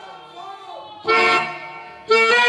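A harmonium chord sounds suddenly about a second in, held loud for a moment and then fading away; before it the reeds play only faintly.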